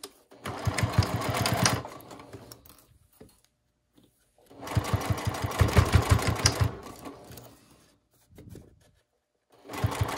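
Juki DU-1181N single-needle walking-foot industrial sewing machine topstitching fabric in short runs, a rapid even stitching rhythm that starts, trails off to a stop, and starts again twice more, the last run beginning near the end.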